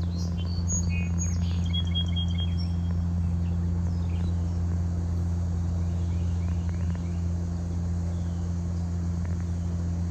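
A steady low hum, with a few short high bird chirps in the first few seconds.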